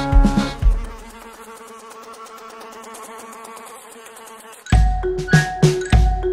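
Bouncy children's-song backing music with a steady beat stops about a second in. A quieter, wavering buzz like a cartoon fly follows for a few seconds. Near the end a new upbeat children's tune with a strong regular beat starts suddenly.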